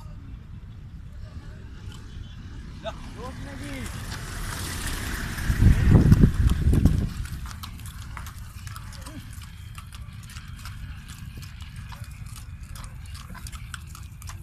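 Hooves of two ponies clip-clopping at a walk on a paved road as they pull a carriage, with short clicks throughout. A loud low rumble swells in and peaks about six seconds in, then dies away.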